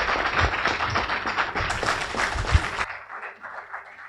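Audience applauding. The clapping drops off sharply about three seconds in, leaving a few scattered claps.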